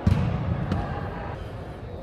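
A single thud of a soccer ball being struck at the very start, echoing through a large indoor sports hall, followed by a few fainter knocks as the echo dies away.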